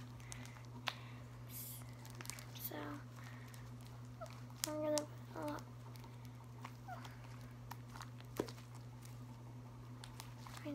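Sticky lotion-softened slime being stretched and squeezed by hand, making scattered small clicks and pops, over a steady low hum.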